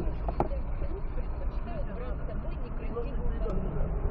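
Low, muffled voices over the steady low rumble of a stopped car's engine and passing traffic, with one sharp click about half a second in.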